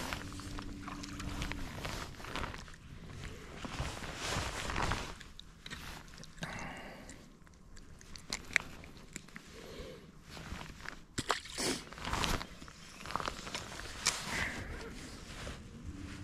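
Irregular handling noise on a fishing boat: scuffs, rustles and sharp small knocks. A low steady hum runs through the first couple of seconds and then stops.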